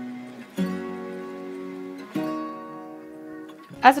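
Background music on acoustic guitar: a plucked chord about half a second in and another about two seconds in, each left to ring and fade.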